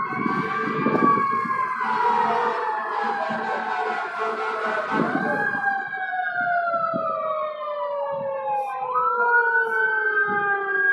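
Approaching fire truck's wailing siren, a slow wail that falls in pitch, rises again about halfway through, falls, and rises once more near the end, over the rumble of passing traffic.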